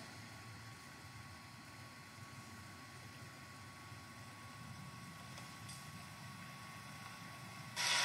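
Faint room tone: a steady low hum with a thin constant tone and light hiss, and no distinct sound event.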